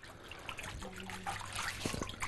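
Faint water trickling as a hand spreads paper-making fibre pulp in water into a thin, even layer, with a small click just before the end.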